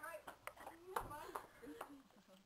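Faint voices with words that can't be made out, and a few sharp clicks among them.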